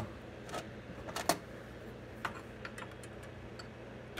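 Scattered light clicks and taps of fingers and plastic parts on a Stihl MS 261 C-M chainsaw's housing, engine off, as a hand reaches behind the rear handle for the plastic winter/summer air shutter. The loudest is a sharp click about a second and a quarter in.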